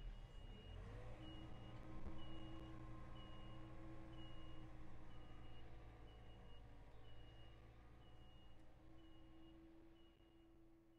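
Vehicle backup alarm beeping steadily, a bit faster than once a second, over the hum of a running engine, fading away toward the end.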